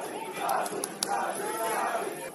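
Several voices shouting at once across a football pitch, players' and spectators' calls overlapping, with a couple of faint sharp clicks.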